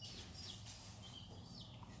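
Faint background birdsong: a small bird chirping over and over in short, high notes.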